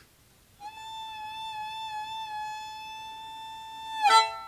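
Violin holding one long, high note with a slight vibrato. It starts about half a second in and turns into a quick downward slide at the very end.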